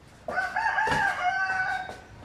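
A rooster crowing once: a single cock-a-doodle-doo lasting about a second and a half, a few quick wavering notes and then a long held note.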